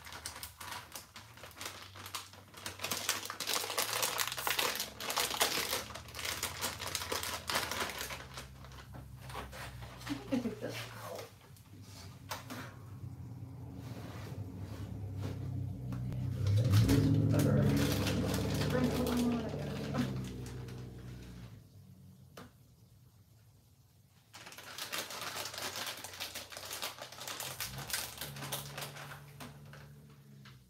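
A plastic bag of shredded cheese crinkling and rustling as it is handled and the cheese is sprinkled out, dense for the first several seconds and again near the end. In between, a louder low-pitched sound swells and fades.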